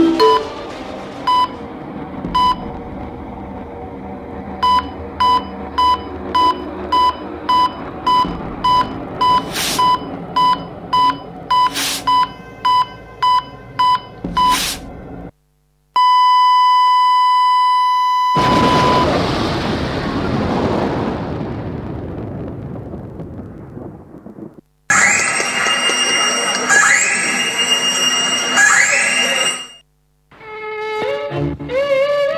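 Recorded heart-monitor sound effect in a performance soundtrack: a single electronic beep repeating about twice a second over a low musical bed, then an unbroken flatline tone for about three seconds, the sign of the patient's death. A rushing swell of noise follows and fades, then after a short break dramatic music with sweeping high tones comes in.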